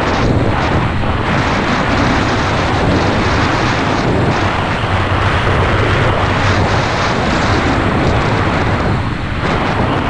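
Loud, steady wind buffeting the microphone of a skier descending at about 60–75 km/h, with the skis running over hard groomed snow beneath it; the rush eases slightly near the end as the skier slows.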